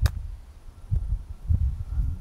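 A golf club striking a ball on a short approach shot: a single crisp click right at the start, followed by low rumbling noise on the microphone.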